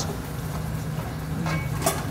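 Steady low hum of a kitchen fan running, with a short click near the end.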